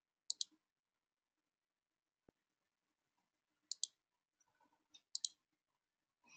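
Three quick double-clicks of a computer mouse: one near the start and two more near the end, the later two about a second and a half apart. Otherwise near silence.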